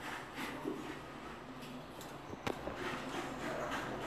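Faint rustling with a few light clicks, the sharpest about two and a half seconds in.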